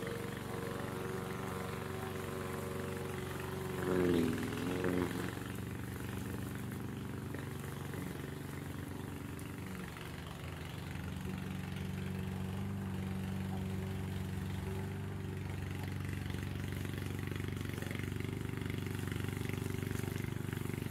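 Engine of a Vigorun VTC550-90 remote control mower running steadily while it cuts long grass; about four seconds in, its pitch dips and recovers as it briefly gets louder.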